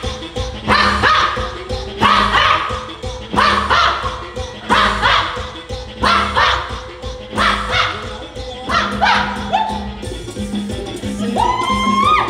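Latin dance music for a Zumba workout, playing loud with a steady beat and short sharp accents about every second and a half.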